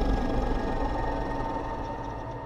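Horror-film sound design: a dense rumbling drone with a heavy low end and sustained eerie tones held over it. It is loudest near the start and eases off slightly.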